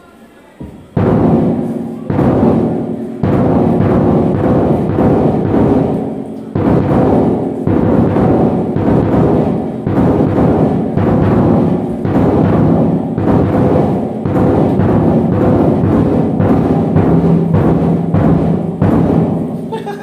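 Bass drum being played: deep drum hits beaten repeatedly in a fast, continuous run, starting about a second in.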